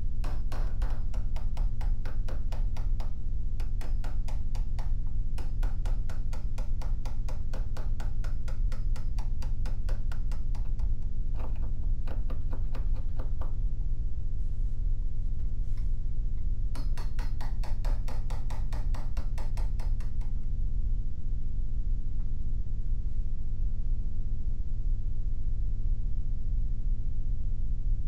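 Steel wood chisel struck in rapid light taps, about five a second, chopping out a shallow mortise in oak; the tapping comes in several runs with short pauses and stops about twenty seconds in. A steady low hum runs underneath.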